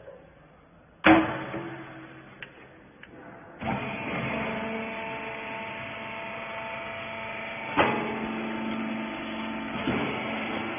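A cotton wiper rag baler: a loud bang about a second in as its loading lid is shut, then from about three and a half seconds its electric motor running steadily, with a clunk near eight seconds.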